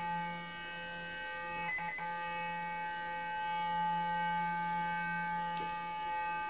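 Clarisonic sonic foundation brush running against the face: a steady electric hum made of several even, unchanging tones, with a brief faint sound about two seconds in.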